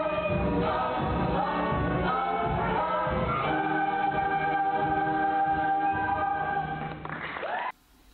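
Ensemble cast of a high school stage musical singing in chorus over backing accompaniment, several voices holding long notes through the second half. It sounds muffled, as taken from the audience, and cuts off suddenly near the end.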